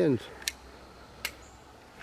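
Two short, sharp clicks about three quarters of a second apart, over faint low background noise.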